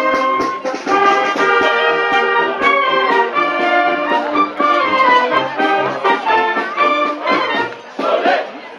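Wind band of brass and woodwinds playing a lively tune outdoors, with melody notes over a regular bass beat. The music breaks off just before the end, giving way to crowd chatter.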